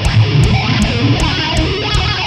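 A live heavy metal band plays, led by a distorted electric guitar over drums, with a cymbal struck about three times a second in a steady beat.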